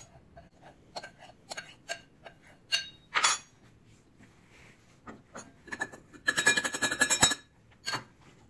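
Metal spoon clinking and scraping against a glass mixing bowl and a metal canning funnel as a flour mixture is spooned into a glass mason jar: scattered light clicks, one louder clink about three seconds in, and a rapid run of ringing clinks lasting about a second near the end.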